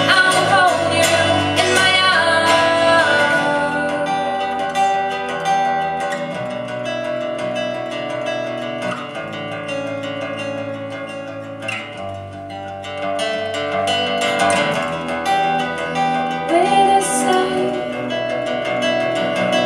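Live acoustic pop music: two strummed and picked acoustic guitars over an electric bass guitar playing an instrumental passage. A woman's singing voice is heard over the guitars at the start and comes back near the end.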